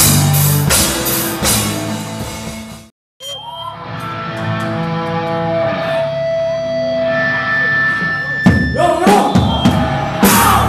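Live rock band playing with drum kit and guitar; the sound breaks off abruptly just before three seconds in. Long held notes then ring on their own with almost no drumming, until the drum kit crashes back in near the end.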